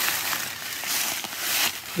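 Dry leaves and pine needles crunching and rustling, a dense crackle that swells briefly in the middle.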